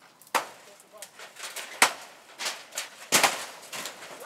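Sharp chopping blows on the wood of a shack being torn down, half a dozen irregular knocks with the loudest near the end.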